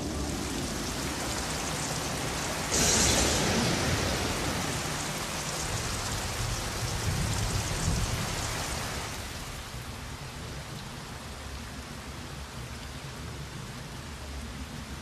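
Heavy rain pouring down in a steady hiss. It jumps louder about three seconds in and eases off a little past the middle.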